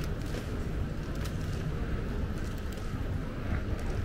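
Ambient noise of an airport terminal hall: a steady low rumble with a few faint scattered clicks.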